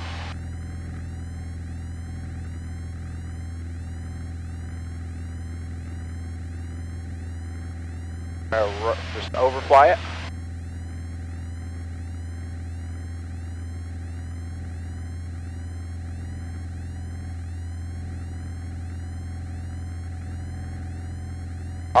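Steady low drone of a Piper PA-28 Warrior's four-cylinder piston engine and propeller in flight, with a brief voice about nine seconds in.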